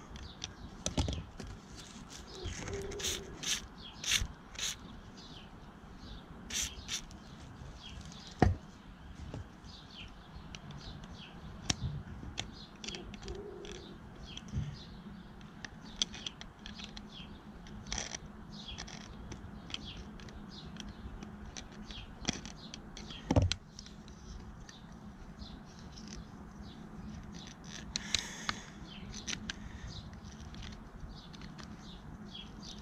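Scattered metallic clicks, taps and scrapes as needle-nose pliers grip and work the wheels of a rust-seized manual can opener, with two louder knocks standing out.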